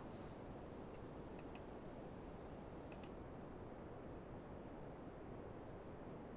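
Faint computer mouse clicks over low room hiss: a quick pair of clicks about a second and a half in, and another pair about three seconds in.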